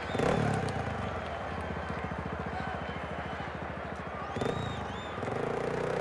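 Dirt bike engine revving up, running at a steady pulsing speed, then revving again near the end.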